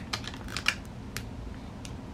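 Thin plastic protective film being peeled off a smartphone's screen: a quick cluster of crackles and clicks in the first second, then two lone clicks.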